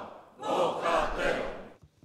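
A chamber full of parliament members shouting a short phrase together once, many voices in unison, fading out shortly before the end.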